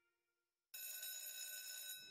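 Silence, then about two-thirds of a second in a bell starts ringing suddenly and holds steady.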